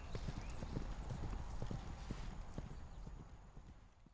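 Hooves of a ridden horse on a dirt and gravel track, an uneven run of clip-clops that grows fainter as the horse moves away, dying out near the end.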